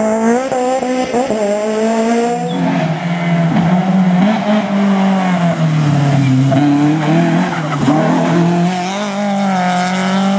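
Rally car engine running hard through a bend: the engine note drops as it brakes and shifts down in the middle, then climbs again and holds as it accelerates away. An abrupt change in the engine note a couple of seconds in marks the switch from one car to another.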